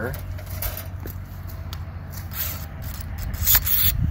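Pruning shears snipping grapevine wood: a few short, sharp cuts, the loudest near the end. Under them runs a steady low rumble.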